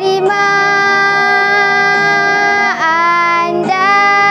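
A girl singing a Malay patriotic song over a backing track. She holds one long note for about two and a half seconds, lets it waver and fall, then starts a new note near the end.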